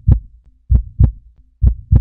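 Heartbeat sound effect: slow double thumps, lub-dub, about one pair a second.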